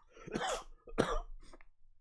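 A man coughing: two strong coughs in the first second, then a weaker one about a second and a half in.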